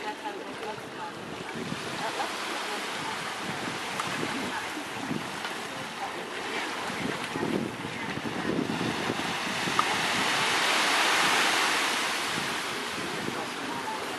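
Small sea waves washing onto a beach, a steady rushing wash that swells to its loudest a few seconds before the end.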